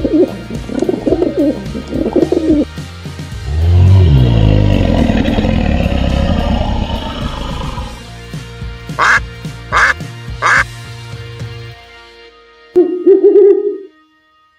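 Google's animal sound samples playing one after another over background music: a dove cooing in three phrases, then a long, loud, low dinosaur roar, then three short duck quacks. Near the end, after the music stops, comes a single owl hoot.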